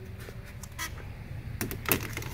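Jumper cable clamp being handled and clipped onto a golf cart battery terminal: a few short clicks and scrapes over a low steady hum.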